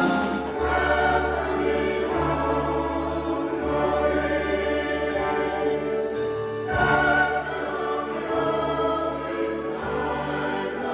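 Mixed choir singing held chords with a symphony orchestra. The music changes abruptly at the start, and a louder new chord enters about seven seconds in.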